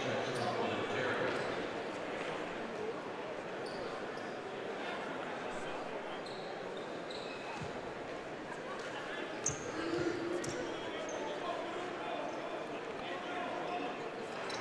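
Basketball bounced on a hardwood court a few times, clustered about two-thirds of the way through, as a player readies a free throw. Under it is a steady murmur of the arena crowd.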